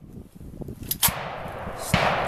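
Armalite AR-180 rifle handled at a range: a sharp crack about a second in, with handling rumble and rustle on the microphone.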